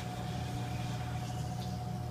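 Steady low machine hum with a thin, constant high tone above it, from the running equipment of a food-truck kitchen.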